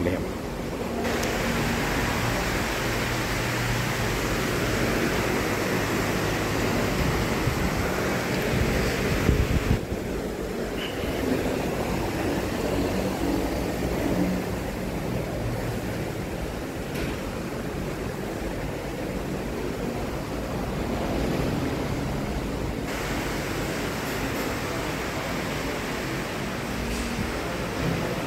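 Steady background hiss and hum with faint, indistinct voices, the high hiss dropping away for a stretch in the middle.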